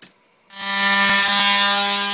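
Electric handheld sander switched on about half a second in, its motor running at a steady pitch under a loud rasping sanding noise as it sands a rusty steel motor-mount bracket; the motor just begins to slow at the end.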